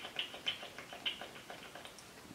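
Small plastic bottle of hair oil being handled, making a run of faint, quick clicks, about five or six a second, that fade away towards the end.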